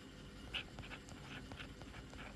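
Faint scratching and light tapping of a stylus on a tablet screen as a word is handwritten: a few short strokes with small clicks between them.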